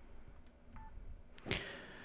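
Quiet room tone with a brief, faint electronic beep a little less than a second in, then a short click and a brief rush of noise near the end.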